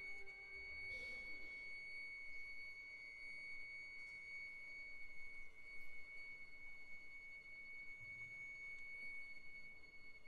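Quiet passage of a violin concerto: a single high, pure note held steadily and softly throughout, with a lower note fading out just after the start.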